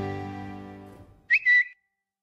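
The last chord of harpsichord and strings dies away, then about a second and a half in a short, high, whistle-like chirp rises and holds briefly: a phone's tweet-sent sound effect.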